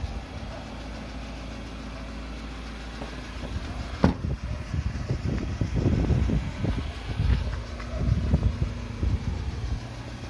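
Ford Transit Custom diesel van idling with a steady low hum. About four seconds in there is one sharp knock, then irregular low rumbling gusts over the engine sound until near the end.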